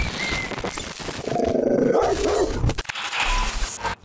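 A short whistle at the start, then a dog barking over a dense, noisy sound-effects bed.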